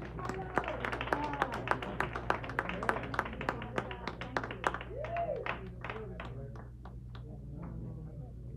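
Scattered hand clapping from a small audience, fast and irregular, with a few voices calling out; the clapping thins out and fades near the end.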